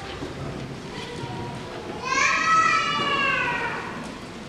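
Low murmur of voices in a hall, then about halfway a loud, high-pitched vocal cry that falls slightly in pitch and lasts nearly two seconds.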